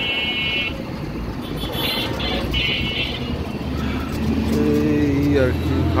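Busy street traffic with engines and tyre noise. About two seconds in come three short high horn toots, and from about four seconds a heavy vehicle's low engine drone builds.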